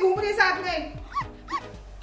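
A girl wailing and crying loudly in a high, wavering voice, fading into two short high whimpers a little past a second in, over a backing of background music.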